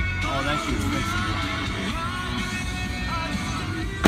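Music with singing, playing over the car's aftermarket stereo.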